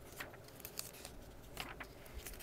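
Faint, brief rustles and ticks of paper as the pages of a book are handled and turned, a few separate small sounds spread through the moment.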